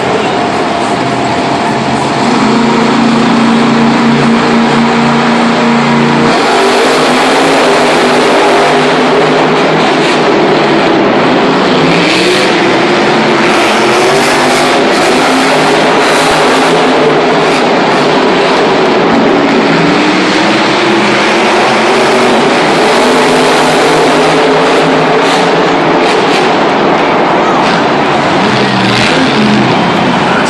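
Monster truck's supercharged V8 engine revving loudly, its pitch climbing and falling in repeated surges as it drives. It gets louder about two seconds in.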